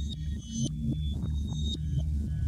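Electronic music with sustained low bass notes and high held synth tones.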